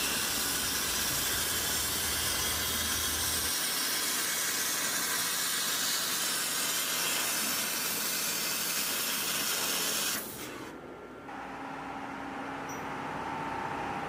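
CNC fiber laser cutting steel plate: a steady hiss of the gas jet from the cutting head, which cuts off suddenly about ten seconds in. A quieter steady machine hum with a faint whine follows.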